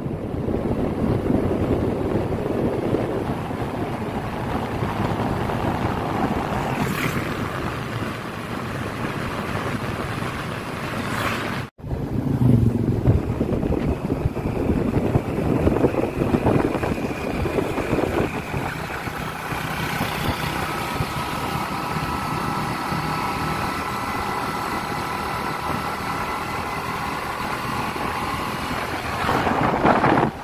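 Wind rushing over the microphone of a moving motorcycle, with the engine running underneath; the sound drops out suddenly for a moment about twelve seconds in.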